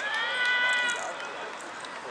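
A single high-pitched drawn-out shout from a spectator, held for about a second, over crowd chatter.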